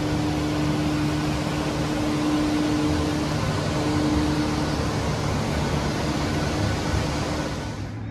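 Steady ventilation noise in a large showroom: an even hiss over a low hum, with a faint steady tone that fades out about five seconds in.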